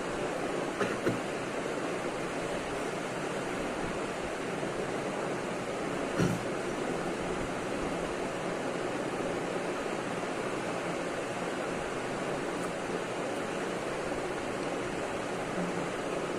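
Steady, even background hiss with no speech, broken by a couple of brief soft knocks about one second and six seconds in.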